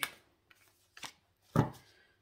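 Oracle cards being handled: a few light clicks and rubs, then a card put down on the cloth-covered table with a single thump about one and a half seconds in, the loudest sound.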